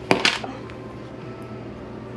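Thin plastic film being peeled off the top of a tub of ice cream: one brief crinkle a moment in, then only a low steady hum.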